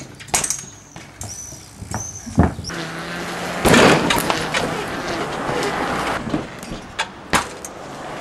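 Sharp knocks of a trials bike's tyres and frame landing on a metal railing and on a plastic recycling bin, the loudest about four seconds in, with more near the end. Birds chirp through the first few seconds, and a steady rushing noise runs under the middle of it.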